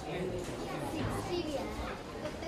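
Many children's voices talking over one another in an indistinct, continuous chatter.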